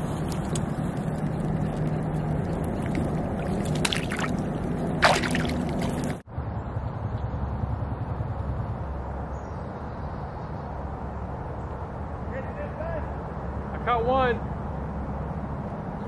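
Water sloshing and splashing as a hand-held bass is let go back into a pond, with a couple of sharp splashes about four and five seconds in. After a sudden cut, steady outdoor background with brief voice sounds near the end.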